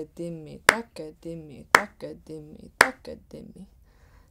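Konnakol recitation: spoken drum syllables, several to each beat, with a sharp hand clap keeping the beat about once a second, four claps in all.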